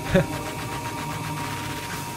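Twin-shaft shredder running steadily: a low motor hum with a fast, even ticking from its turning blades and gears as soft slime is drawn through.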